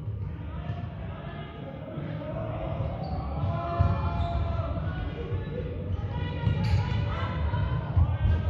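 Players' feet thudding on a sports-hall floor during play, with players' shouted calls echoing around the large hall from about two seconds in.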